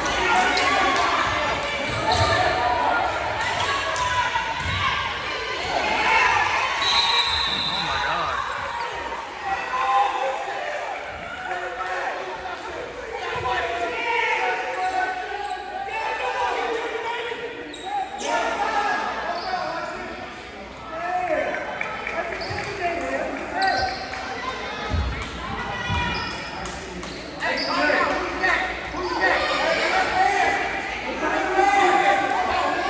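Basketball bouncing on a hardwood gym court, with the voices of players and spectators echoing in the hall.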